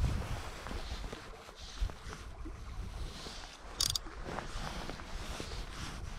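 Low rumble of wind and handling noise on a body-worn microphone, with small clicks and one brief high zipping buzz a little before 4 s as fly line is pulled off a click-drag fly reel.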